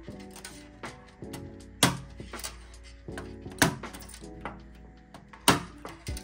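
Background music with a steady beat, over a scatter of sharp clicks and clinks from the alarm panel's circuit board being pressed down onto its standoffs in the metal cabinet.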